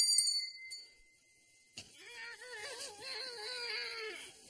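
A small handbell finishes ringing, its last quick strikes fading out in the first half-second or so. After a short quiet and a click, a single voice holds a long wavering note to the end.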